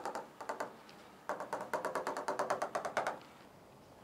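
A stylus tapping rapidly on the screen of an interactive whiteboard as dashed lines are drawn, about ten taps a second. There are two runs of taps: a short one at the start, then a longer one of nearly two seconds.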